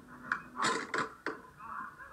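A phone clattering as it falls and hits the ground, heard through its own microphone: four sharp knocks in about a second, then muffled scraping.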